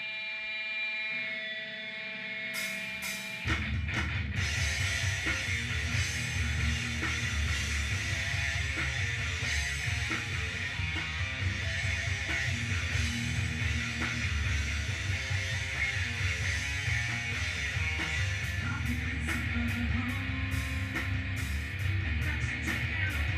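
Live rock band playing. Electric guitar rings out alone with sustained notes for the first few seconds, then drums and bass come in together about three and a half seconds in and the full band plays on steadily.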